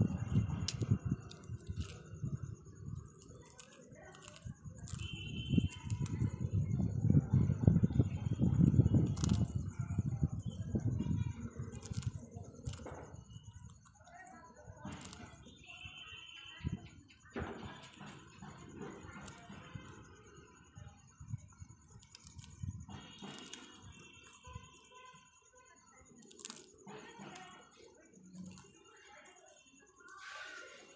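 Rose-ringed parakeet nibbling a piece of biscuit in a wire cage: scattered sharp clicks of beak and cage bars, with a low rumbling noise through the first third and a few short high tones.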